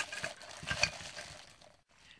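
Thin plastic bag rustling and crinkling as cast brass hooks are taken out of it, with a few light ticks; it dies away about a second and a half in.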